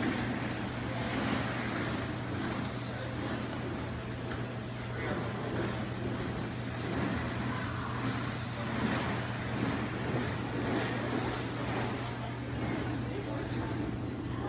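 Figure skate blades swishing and scraping on ice as a large group of skaters strides in unison, the swishes swelling and fading every second or so over a steady low hum.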